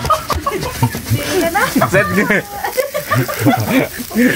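People talking, with a little chuckling.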